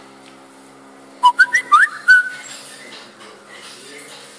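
A short run of whistled notes about a second in: several quick, rising chirps lasting about a second, over a faint steady hum.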